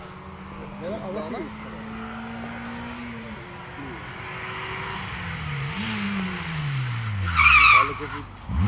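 Renault Clio rally car's engine pulling hard as it approaches, getting louder, then the revs fall steeply as the driver brakes. It ends with a short, loud tyre squeal as the car turns into a tyre-stack chicane.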